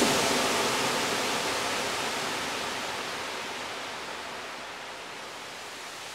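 Steady, even hiss of noise in a generative electronic music track, with no notes or voice, slowly fading out.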